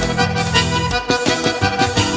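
Live forró band playing an instrumental passage with no singing: held low notes for about a second, then a steady beat of percussion strokes.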